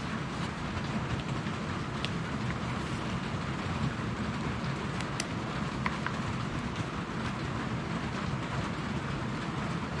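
Steady rain falling on the shop roof, an even hiss, with a few faint clicks as the knife is handled in its sheath.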